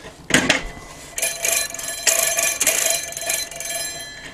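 A short knock as a bicycle quick-release lever on a scroll saw's blade clamp is worked, then about two seconds of steady metallic rasping with a squeaky ring as the lever is turned on its thread.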